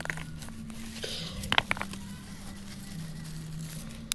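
Leaves and thin twigs of a small shrub rustling and crackling as a hand pushes in among the stems, with a few sharper crackles about one and a half seconds in, over a steady low hum.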